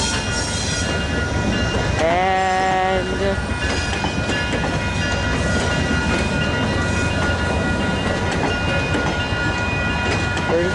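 VIA Rail passenger coaches rolling past on the rails with a steady, loud rumble and wheel clatter. About two seconds in, a short pitched sound rises and then holds for about a second.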